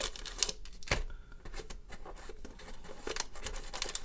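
Shiny trading-card packs crinkling and scraping against the cardboard tray as fingers pry them out of a tightly packed hobby box, with scattered small clicks and a sharper tap about a second in.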